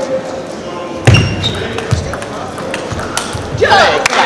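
Table tennis ball being struck by bats and bouncing on the table during a rally, short sharp clicks with a brief ringing ping, and a louder knock with a thud about a second in. A short rising squeal near the end, over murmuring voices in a large hall.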